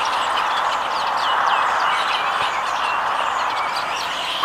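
A flock of small birds on overhead power lines, many short high chirps over a steady rushing noise.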